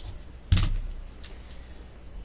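A few clicks at a computer: a sharp click at the start, a louder knock about half a second in, then two lighter clicks a little after a second in.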